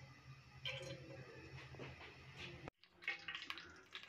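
Cooking oil trickling in a thin stream into a stainless steel pot, faint and uneven. The sound drops out briefly about three quarters of the way through.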